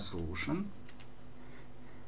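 A few computer keyboard keystrokes after a man's voice breaks off, then quiet room tone.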